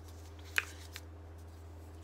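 A small paper slip being handled and unfolded: a few faint crinkles and one sharp crackle about half a second in, over a low steady hum.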